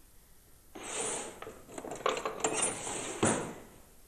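Scraping and clattering on a floured kitchen work counter as utensils are handled, lasting about three seconds, with a few sharper knocks and the loudest near the end.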